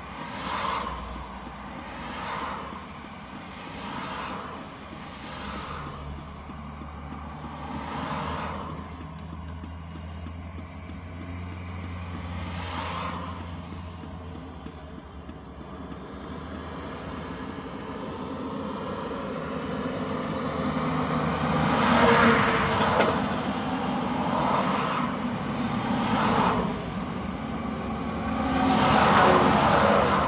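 Highway traffic: vehicles pass one after another every couple of seconds, with a steady low engine hum under part of it. Two louder vehicles pass in the last third.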